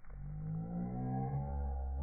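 A low, steady, music-like droning tone that starts suddenly and holds, its pitch sagging slightly partway through.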